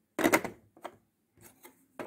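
Hard plastic pieces of the Jungle Cache-Cache puzzle clicking against its plastic tray as they are set and shifted into place: a sharp cluster of clicks just after the start, then a few lighter taps.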